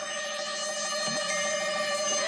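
A phone ringing with a steady electronic ringtone held on one unchanging chord.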